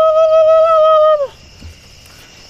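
A man's high-pitched cry held on one slightly wavering note, a mock war cry, cutting off about a second in.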